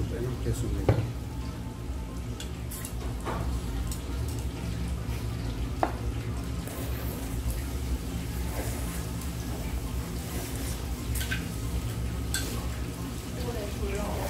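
Chopsticks and bowls at a meal of noodles: a few light clicks and knocks scattered over a steady low background hum.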